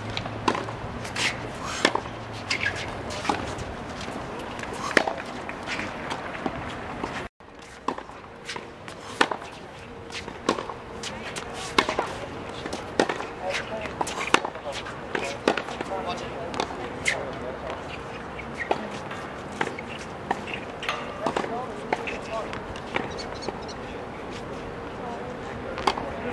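Tennis practice rally: sharp pops of tennis balls struck by racket strings and bouncing on a hard court, coming roughly once a second at an uneven rhythm, over spectators' chatter. The sound drops out completely for a moment about seven seconds in.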